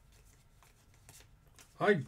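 Faint rustling and a few light clicks of trading cards being handled and slid through the hands, then a man's voice starts near the end.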